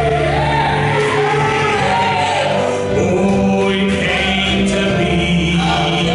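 Men's vocal trio singing a gospel song in harmony, live with a band on drums and guitar.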